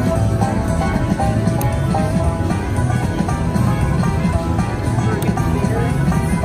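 Eureka Blast video slot machine playing its loud, steady free-games bonus music while the reels spin.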